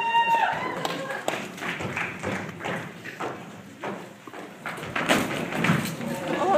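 Irregular thuds and footfalls of costumed fighters rushing across a stage and clashing with padded LARP weapons and shields, with shouting voices. The knocks grow denser and louder near the end.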